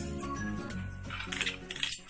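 Light metallic clinks and scrapes of a spoon against a steel bowl as ingredients are poured in and stirred, bunched in the second half, over steady background music.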